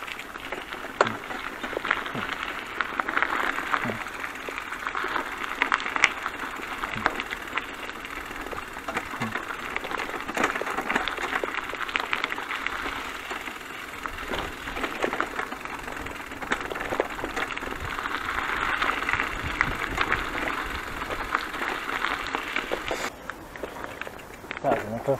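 Bicycle tyres rolling over a rough gravel track: a steady crunching hiss with many small clicks and rattles from the bike. It cuts off suddenly near the end.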